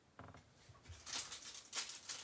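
Quiet crinkling and rustling of a trading-card pack wrapper being handled and torn open, starting about a second in after a faint click.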